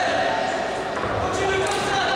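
Spectators and cornermen shouting and calling out during a kickboxing bout, with long held shouts echoing in a large sports hall.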